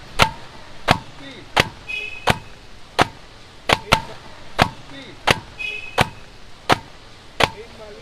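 A hand slapping a cooked, layered paratha down against a hot iron wok, about a dozen sharp slaps evenly spaced roughly 0.7 seconds apart. The beating breaks the paratha's layers loose into flaky shreds.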